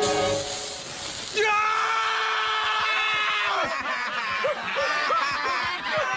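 A long high-pitched cry, held for about two seconds before it falls away, follows a hissing rush. After it comes a man's repeated chuckling laughter.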